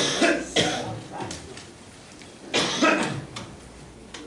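A woman coughing close to a microphone: a quick run of coughs at the start and a second bout about two and a half seconds later.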